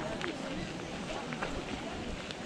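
Footsteps crunching on a gravel path, a scatter of short irregular crunches, with indistinct chatter of several people.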